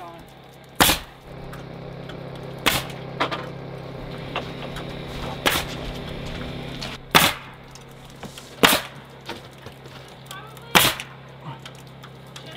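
Dewalt pneumatic coil siding nailer driving nails into lap siding: about six sharp shots, one every one to two seconds, with a steady low hum under the first half.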